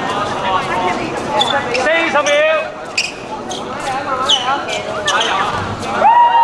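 A basketball bouncing on a hard court during play, with players calling out to each other throughout and several short sharp sounds.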